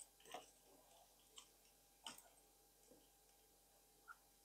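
Near silence broken by a few faint, short clicks of small plastic fan-cable connectors being handled and pushed into the ports of an ARGB/PWM fan controller hub.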